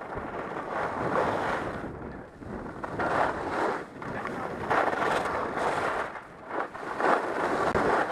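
Atomic 100 CTi skis carving on packed snow: a scraping hiss that swells and fades with each turn, about four turns. Wind buffets the microphone throughout.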